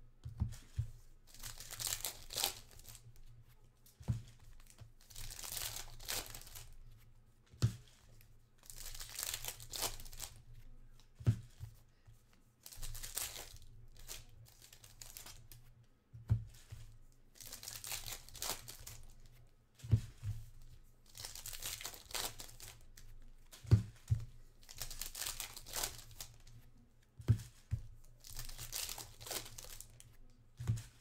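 Trading-card pack wrappers crinkling and tearing in repeated bursts as packs are ripped open and handled. A sharp knock comes every few seconds.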